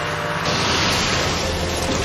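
A sudden rush of blizzard wind noise that starts about half a second in and then runs on steadily.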